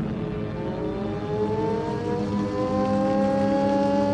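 An air-raid siren winding up, several tones together rising slowly in pitch from about half a second in and levelling off, over a steady low rumble.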